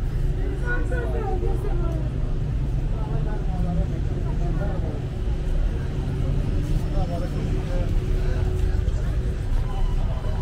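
Street ambience of a busy pedestrian shopping street: passersby talking over one another, over a steady low rumble of traffic.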